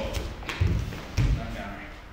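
Dull thuds of a body hitting and rolling across a padded dojo mat after being struck down. There are two low thuds, about half a second and just over a second in.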